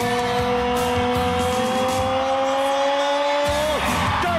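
A voice holding one long note for about four seconds, rising slightly in pitch and falling away just before the end, over loud wrestler entrance music.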